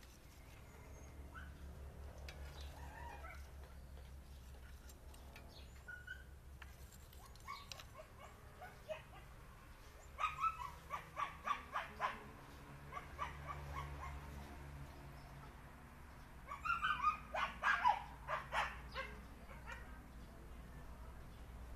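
Short, high yelping calls from an animal, in two quick runs: one about ten seconds in and another near the end, over a low steady hum.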